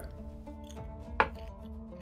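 A die rolled for an attack, landing with one sharp click about a second in, over faint background music with steady held notes.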